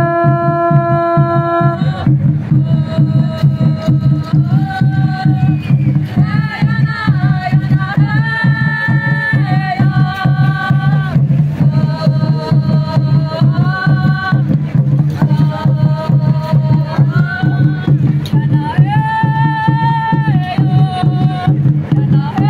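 A conch shell trumpet blown as one steady held note that stops about two seconds in. Then upright wooden hand drums keep up a steady fast beat while voices sing a chant whose melody steps up and down in repeated phrases.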